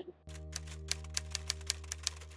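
Typewriter sound effect, quick uneven key clicks about six a second, over a steady low sustained tone, as text is typed out on screen.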